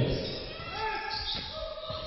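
Basketball being dribbled on a hardwood court, a few dull bounces ringing in a large hall, with faint voices in the background.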